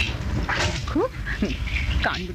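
A person's voice making short sounds with rising, sliding pitch and no clear words, twice about halfway through, over a steady low hum.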